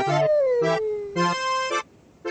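A long, howling character voice that slides down in pitch for about a second, over a bouncy jig played in short, clipped chords on an accordion-like instrument.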